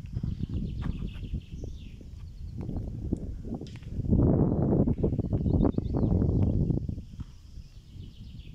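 Wind buffeting the microphone in irregular low rumbles, with a stronger gust from about four to seven seconds in.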